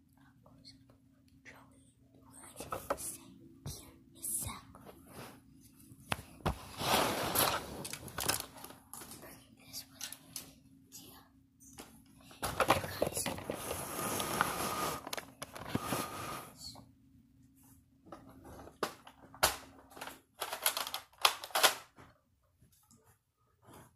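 Whispering and close rustling and clicking near the microphone, coming in irregular bursts, loudest about six to eight and thirteen to sixteen seconds in.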